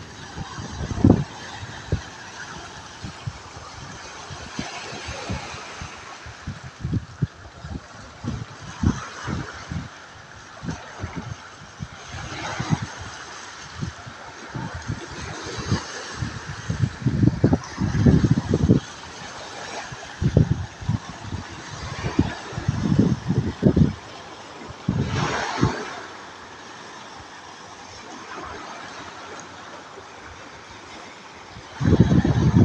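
Small sea waves breaking and washing over a rocky, seaweed-strewn shore, the surf hiss swelling every few seconds as each wave comes in. Wind buffets the microphone in frequent low thumps.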